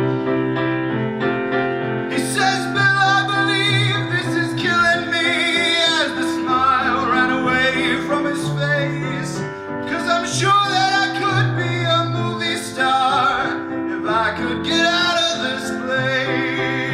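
Grand piano playing chords and a melody line, with a voice singing with vibrato over it from about two seconds in.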